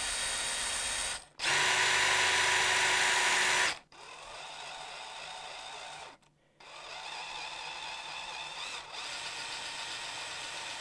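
Cordless drill turning a long drill bit through a pine guitar body, run in stops and starts. It cuts out briefly about a second in, runs loudest and fastest for about two seconds, then stops and carries on quieter and slower, pausing once more just past the middle.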